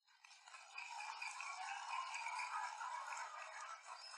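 Audience applause, building over the first second and dying away near the end.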